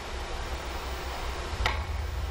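One sharp click of a carom billiard shot about one and a half seconds in, over steady hall hiss and a low hum.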